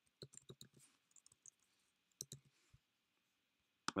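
Faint keystrokes on a computer keyboard: a quick run of about half a dozen key clicks in the first second, a few more, then a couple more about two seconds in.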